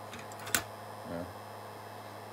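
Heat gun running on a low setting, heard as a steady low hum, with one sharp click about half a second in.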